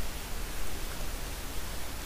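Steady hiss of a recording's background noise from a voice microphone, with a low hum underneath.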